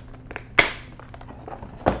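Hard plastic tackle box being handled and set down into a soft zippered binder: a few sharp clicks and knocks, the loudest about half a second in and another just before the end.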